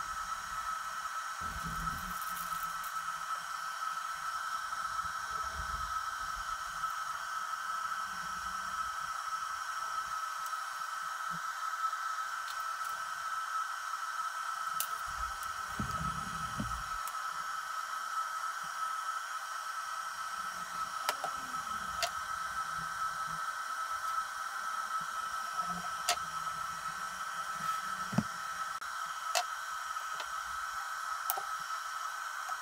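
A steady high-pitched electronic whine with hiss. Over it come a few soft thumps and several light clicks and knocks from a circuit board being handled on a desk.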